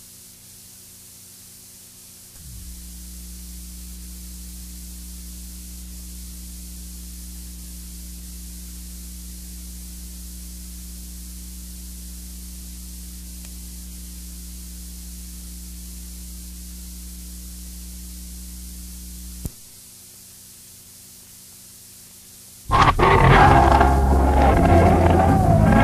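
Steady low electrical hum on an old broadcast recording. It steps up in level about two seconds in and drops back with a sharp click about three-quarters of the way through. Loud music comes in near the end.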